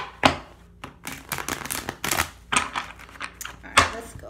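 A deck of tarot cards being shuffled by hand: an irregular run of sharp papery flicks and slaps, some in quick clusters.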